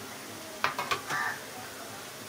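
Jangri frying in hot oil with a steady faint sizzle. A little over half a second in, a perforated metal skimmer knocks and scrapes against the pan a few times.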